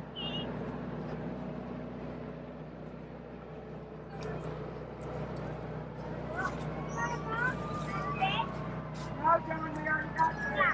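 A steady low motor hum in the background, with faint voices of people further off becoming more noticeable from about six seconds in.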